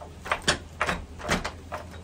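Wrapped fists striking a post-mounted makiwara in quick alternating punches, about five sharp impacts in two seconds: striking practice for knuckle conditioning.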